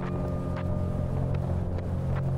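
Harley-Davidson Fat Boy's V-twin engine running at a steady cruise, an even low drone, with wind rushing over the microphone.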